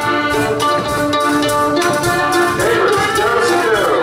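Live folk dance band of mandolin, accordion, guitar and lagerphone playing a contra dance tune, with held accordion-like notes over a steady, even beat.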